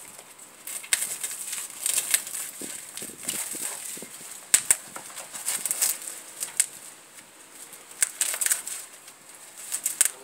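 Clear plastic wrapping on a long parcel being slit with a knife and pulled apart by hand: irregular crinkling and rustling with sharp crackles.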